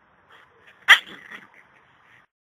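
A small dog gives one short, sharp yip about a second in, followed by a few quieter short sounds.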